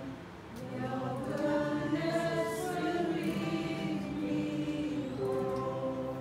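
A worship song: a woman and a man singing together, accompanied by acoustic guitar and electronic keyboard.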